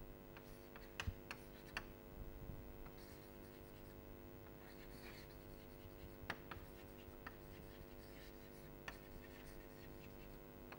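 Chalk writing on a blackboard: faint scratching with scattered sharp taps of the chalk, a cluster about a second in and more around six to seven seconds, over a steady low hum.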